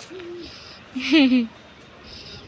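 Playful voice sounds: a short held vocal note at the start, then a louder short laugh about a second in.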